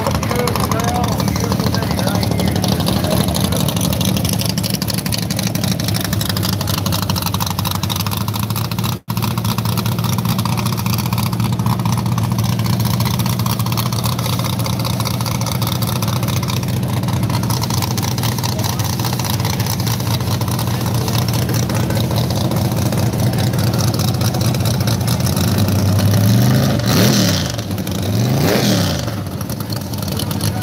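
Drag car's engine idling with a steady low note, cutting out briefly about nine seconds in, then revved twice near the end, its pitch rising and falling each time.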